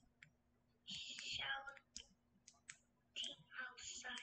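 A child's faint, thin-sounding voice answering, hard to make out, with a few short clicks between the phrases.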